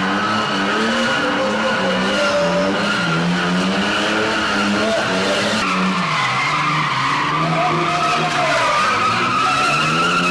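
Ford Cortina spinning car running at high revs while its rear tyres spin and squeal on the concrete. The engine note drops about six seconds in and climbs back near the end.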